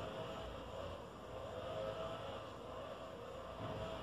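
Quiet room ambience: a faint, steady background hiss with a low rumble underneath, no distinct events.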